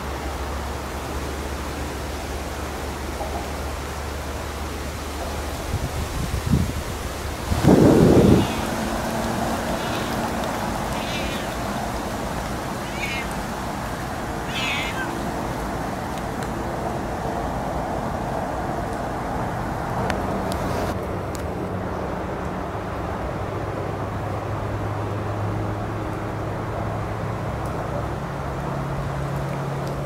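Siamese cat meowing a few short times over a steady low background rumble, with one loud low bump about eight seconds in.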